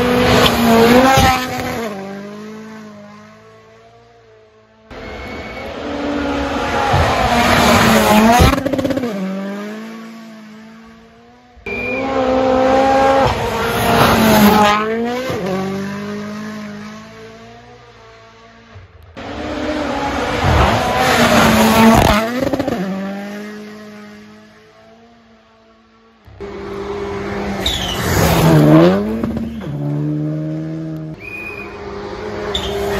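Rally cars at full speed on a gravel stage, one after another: each is heard coming on fast, passing close with its engine note dropping sharply in pitch, then fading away. About five cars go by, with abrupt cuts between them.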